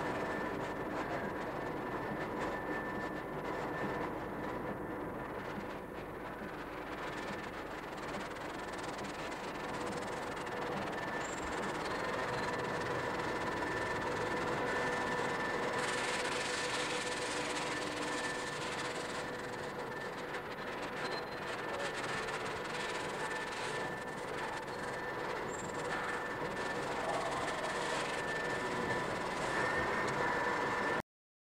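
Steady mechanical running noise with a few constant hum tones, turning brighter and hissier about halfway through.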